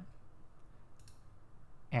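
A single faint computer mouse click about a second in, over low room noise.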